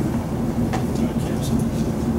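Steady low room hum, with one faint click a little before the one-second mark.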